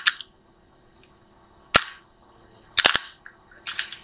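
Computer mouse clicking: a single sharp click just before two seconds in, a quick double-to-triple click near three seconds, then a denser run of clicks and clatter near the end.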